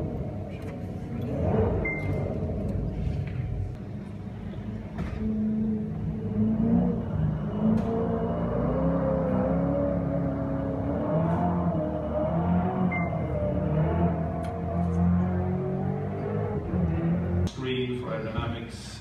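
Koenigsegg One:1's twin-turbo V8 running as the car drives around a wet skid pad, its revs rising and falling in waves over a steady low rumble. The sound cuts off suddenly just before the end.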